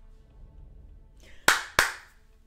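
Two sharp hand claps about a third of a second apart near the end, over faint music from the show.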